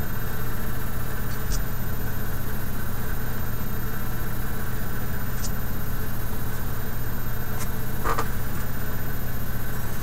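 A steady low mechanical hum, like a small motor or fan running, with a few faint clicks scattered through it.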